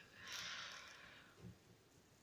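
Near silence, with a faint hiss in the first second that fades away.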